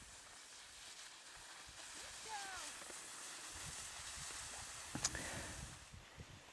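Cross-country skis sliding through classic tracks on packed snow, a steady hiss that swells as the skier comes closer. About two seconds in there is a short, high, falling voice call, and a sharp click comes about five seconds in.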